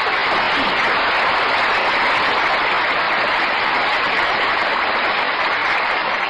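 Live studio audience applauding the stars' curtain call: dense, steady clapping at an even level, on an old radio broadcast recording.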